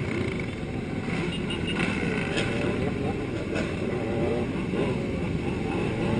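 Engines of a large pack of motorcycles riding together along a road, heard from among the riders, with some engines rising and falling in pitch as riders work the throttle.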